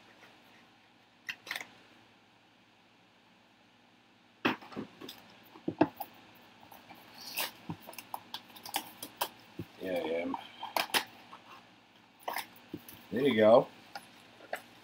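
Boxes of trading cards being handled and set down on a table: scattered light clicks and taps, with a quiet gap early on. A short voice-like sound comes about ten seconds in and again near the end.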